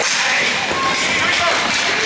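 Ice hockey play in an indoor rink: a stick cracks against the puck on a pass at the start, over skates scraping the ice and voices calling out.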